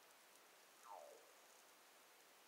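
Near silence: room tone, with one faint, brief falling whistle about a second in.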